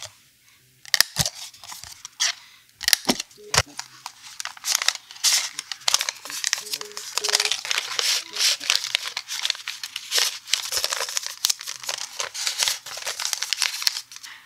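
A few sharp clicks from small metal jewellery pliers in the first few seconds, then continuous paper rustling and crinkling as a backing card with a charm is slipped into a small kraft paper envelope.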